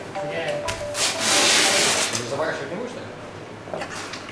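A loud, rough rubbing rasp lasting about a second, from a single-disc parquet floor machine and its cloth pad working over the oiled wood floor, followed by a few lighter knocks and scuffs.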